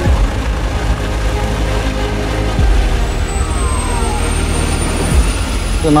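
Eurocopter EC135 helicopter coming in to land: a steady rush of rotor and turbine noise, with a high whine rising slowly from about halfway.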